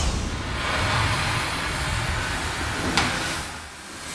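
Steel hull repair work on a storm-damaged fishing cutter: a steady rushing noise of metalwork, with a single sharp knock about three seconds in.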